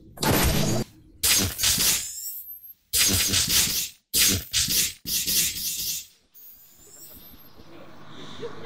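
Sci-fi machine sound effects: about five short, harsh bursts of hiss and crackle in the first six seconds, each under a second, with brief silences between, then a faint low rumble that slowly grows.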